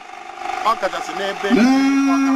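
A man speaking, ending in one long drawn-out vocal sound held at a steady pitch for over a second.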